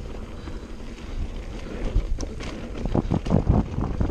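Mountain bike riding fast down dirt singletrack: wind rushing over the GoPro's microphone and tyres rolling on dirt. A cluster of knocks and rattles from the bike over bumps comes in the second half.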